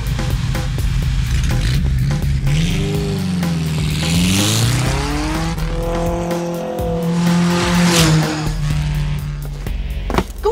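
Race car engine running at speed on the track, its pitch dipping and climbing again about three to five seconds in, over background music with a steady beat.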